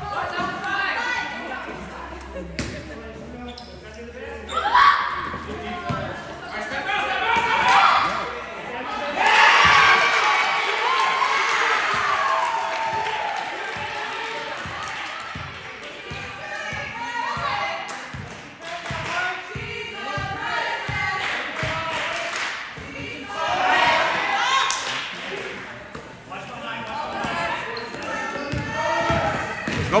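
Basketball dribbled on a hardwood gym floor: a steady run of bounces, about two a second, through the middle stretch. Indistinct voices of players and spectators echo around the gym.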